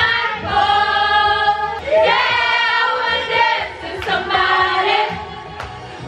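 A group of young women singing together into karaoke microphones, loud and a little ragged, holding three long notes one after another over the music.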